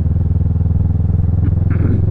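Motorcycle engine running at a steady, unchanging pitch while cruising, heard from a helmet-mounted camera.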